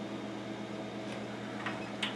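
A steady low hum in the room, with a couple of faint light clicks in the second half.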